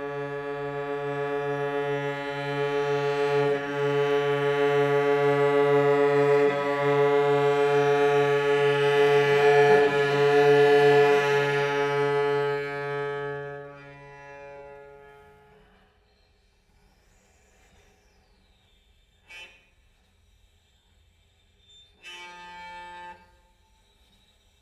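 Solo cello playing one long bowed low tone, rich in overtones, that swells over about twelve seconds and then fades out. After a stretch of near silence comes a single sharp tap, and then a short, quieter bowed sound near the end.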